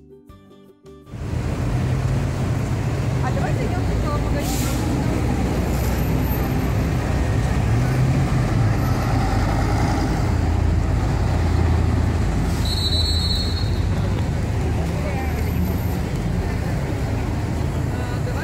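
A music intro cuts off about a second in, then loud road traffic follows: a bus and cars passing close by with a steady low rumble. A brief high squeal comes about two-thirds of the way through.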